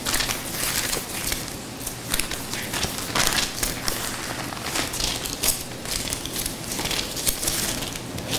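Bible pages being leafed through by hand, a continuous run of papery rustles and crinkles as a passage is looked up.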